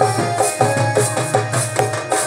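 Live folk music: barrel drums (dhol) played on a steady beat, with a jingling rattle on the beats and short melodic notes over them.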